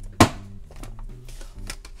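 An envelope punch board's punch pressed down through cardstock: one sharp clack about a quarter second in, over background music.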